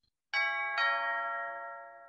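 A two-note ding-dong chime: a higher note, then a lower one half a second later, each ringing on and slowly fading away.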